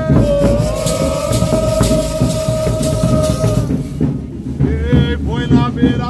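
Congado singing over drums: a man's voice holds one long note for about three seconds, then the sung phrases start again near the end. Drum beats and rattling percussion run underneath.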